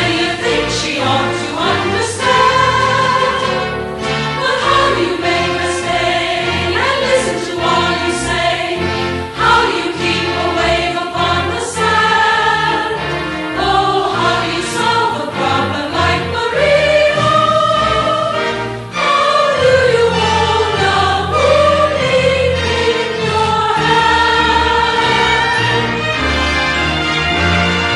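A choir singing a Christian song with instrumental accompaniment.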